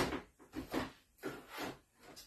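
A thin sheet cover rustling and crinkling as it is peeled back off a metal sheet pan, in about five short bursts.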